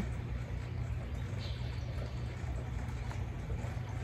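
Steady low background rumble, with one faint, short high chirp from a hummingbird about a second and a half in.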